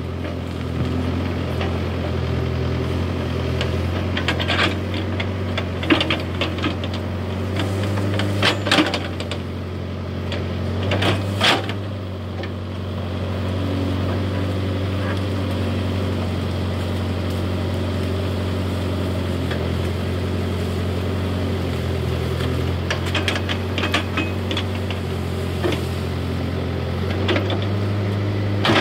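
Case backhoe loader's diesel engine running steadily under working load, its note rising and falling a little as the hydraulics work. Several clusters of sharp cracks and scrapes as the bucket tears through brush and branches and scrapes the bank, the loudest about eleven seconds in and again near the end.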